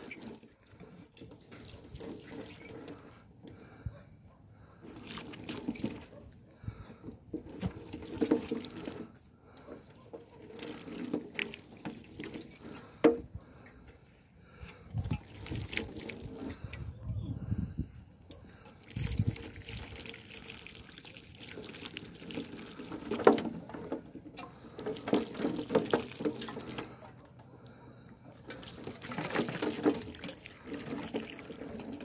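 Boiling water being poured in irregular spells onto a wire-mesh cage trap and the snow beneath it, splashing and trickling with short pauses between pours.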